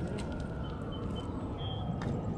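Outdoor background ambience: a steady low rumble with a faint steady hum, and a few short faint high chirps near the middle and end.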